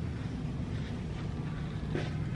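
Steady low hum and rumble of room noise, with no distinct events.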